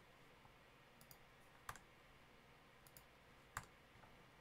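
Near silence broken by about six faint computer mouse and keyboard clicks, in two quick pairs and two single clicks, as selected shapes are being deleted.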